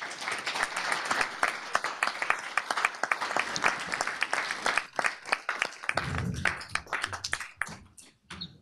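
Audience applauding in a lecture hall, the clapping thinning out and dying away near the end.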